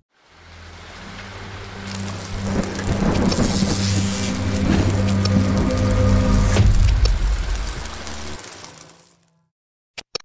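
Produced end-card sound effects of rain and thunder over a low steady droning tone, swelling to a peak about six to seven seconds in and then fading out before the end.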